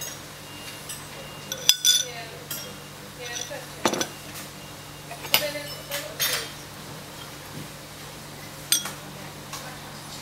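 Metal teaspoon clinking against a porcelain teacup as milk is spooned into the tea and stirred in: a handful of separate light chinks spread through, with a faint steady hum underneath.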